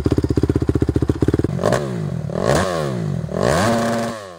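Motorcycle engine: rapid, even firing pulses for about a second and a half, then revving up and down in repeated rising and falling sweeps.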